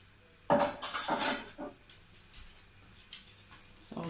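Kitchenware clattering: dishes or utensils knocking together for just under a second, starting about half a second in, followed by a few lighter knocks.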